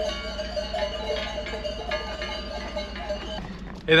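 Bells on a herd of cows ringing, many overlapping tones of different pitches, over a low steady hum.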